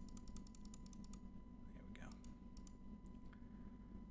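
Computer mouse button clicked rapidly, a fast run of clicks in the first second, then a few scattered single clicks, stepping through image frames.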